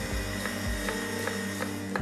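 Stainless-steel electric meat grinder running steadily, a hum with faint regular ticks, as it grinds pork cracklings and onion.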